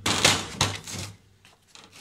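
Hard plastic Hikoki G13SN2 tool case being turned and handled on a workbench: a loud burst of plastic knocking and scraping in the first second, with two sharper knocks, then it dies away.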